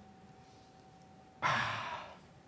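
A pause, then about one and a half seconds in a man's sudden loud breath, close on a headset microphone, fading away over half a second.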